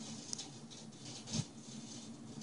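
Quiet room tone with faint handling noise: a light click about a third of a second in and a short soft bump near the middle.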